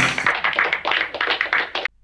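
Audience applauding, a dense patter of many hands clapping that cuts off abruptly just before the end.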